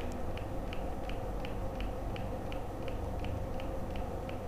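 A faint, regular light ticking, about four ticks a second, over a steady low background hum.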